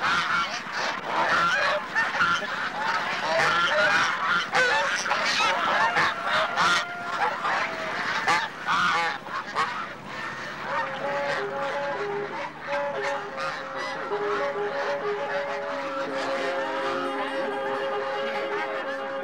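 A crowded flock of domestic fowl calling, many short calls overlapping one another. About ten seconds in, the calls thin out and music with long held notes comes in.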